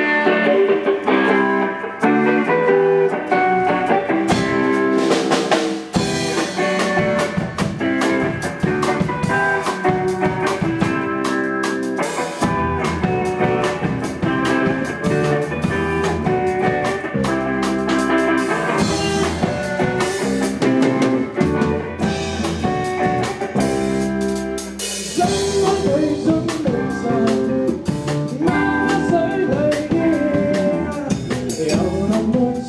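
A rock band playing live: electric guitars over a drum kit. The low end fills out about six seconds in and again about twelve seconds in.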